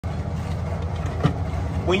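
Steady low rumble of motor vehicles, with one light knock a little over a second in.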